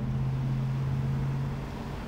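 A motor vehicle's engine running as it passes on the road, a steady low hum that fades about a second and a half in.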